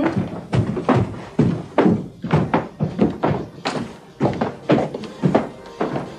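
A series of dull thumps at an uneven pace of roughly two a second, with music.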